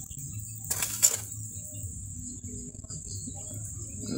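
Quiet outdoor background with a steady high insect chirring, typical of crickets, and one brief rustle about a second in.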